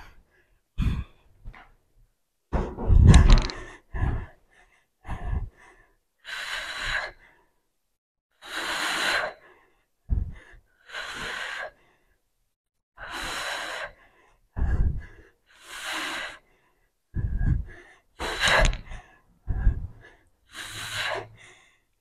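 A woman breathing hard from exertion during a dumbbell split-squat set, heard close on a clip-on microphone. Her heavy breaths come one every second or two, with a few low thumps among them.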